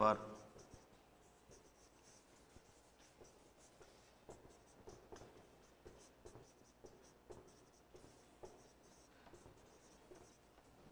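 Marker pen writing on a whiteboard: faint, short strokes and taps at an irregular pace as the words are written out.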